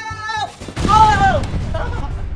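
Big soft foam play blocks crashing over and tumbling as a person slides into them: a sudden loud crash about three quarters of a second in that dies away within about a second.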